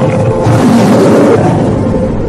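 A tiger's roar sound effect, loud and rough with a wavering low pitch, cutting in as a musical sting ends.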